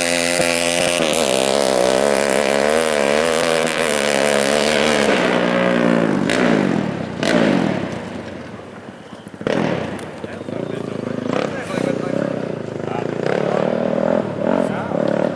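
Honda TRX450R's single-cylinder four-stroke engine through a DASA Racing exhaust, revving hard with rising and falling pitch as the quad pulls away. About six seconds in the pitch drops and the sound fades as it runs into the distance, then it picks up again as the quad comes back.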